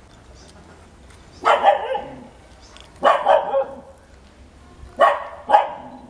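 A dog barking in three short bursts about a second and a half apart, the last a quick double bark.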